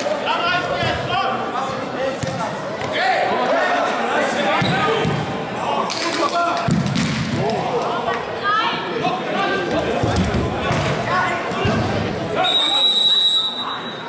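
Indoor soccer ball kicked and bouncing with dull thuds on artificial turf, with players calling out in a reverberant sports hall. Near the end a referee's whistle sounds one long steady blast.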